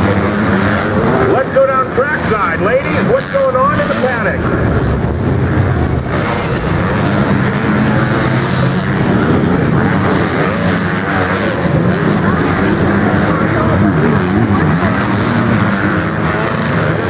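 Motocross bikes running hard on the track, their engines rising and falling in pitch as the riders work the throttle through the jumps, with the strongest revving about two to four seconds in.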